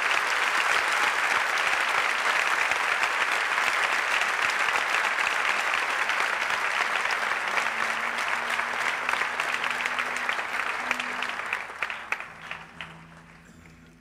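Theatre audience applauding steadily, the clapping thinning and dying away near the end.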